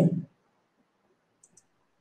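A man's voice ends a word, then near silence broken by two faint, quick clicks about a second and a half in.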